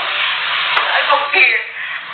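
Loud rustling and handling noise close to the microphone, like fabric or a cushion being moved against it, with a brief voice or laugh near the middle.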